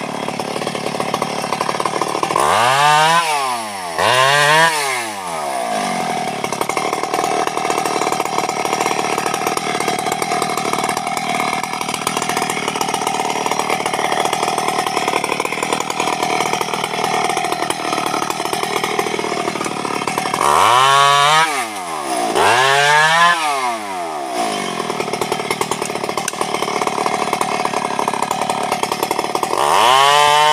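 Stihl two-stroke chainsaw running at a steady idle, revved up sharply and let fall back twice a few seconds in and twice again about two-thirds through. It revs up once more at the very end.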